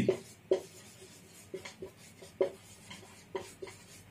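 Marker pen writing on a whiteboard: a string of short squeaks and scrapes from the felt tip as letters are drawn, the sharpest about half a second and two and a half seconds in.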